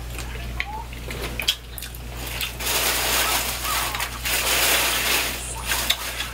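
Close-up eating sounds: wet mouth clicks and finger licking, then about three seconds of hissy sucking and chewing noise, over a steady low electrical hum.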